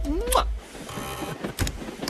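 A sung music phrase that cuts off about a quarter of the way in. It is followed by the mechanical sliding and clicking of a metal door latch and handle on a cabin door.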